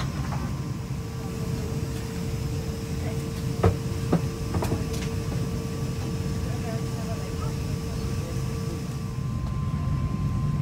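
Steady rumble and hiss of an Airbus A350-900's cabin ventilation while the airliner stands at the gate for boarding, with a steady hum-like tone through most of it. Two sharp knocks come just under four seconds in.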